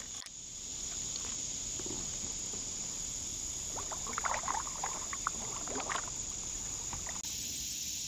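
Kayak paddle strokes: the blades dip, splash and drip in the water for about two seconds near the middle. A steady high insect buzz runs underneath.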